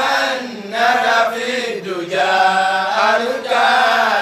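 A single voice chanting a melodic religious chant in long held notes that glide up and down, in about three phrases with short breaths between them.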